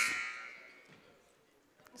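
The tail of a loud buzzer blast dying away in the gym's echo over about a second, then near silence until a man starts to speak near the end.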